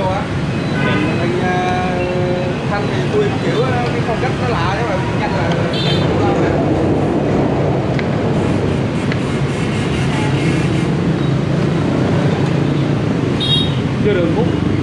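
Steady rumble of street traffic with people talking in the background, and a couple of short, sharp clinks, one about six seconds in and one near the end.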